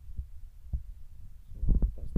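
Low rumble on the microphone with a few soft thumps, like wind or handling buffeting on an outdoor camera. A short burst of voice-like sound comes near the end.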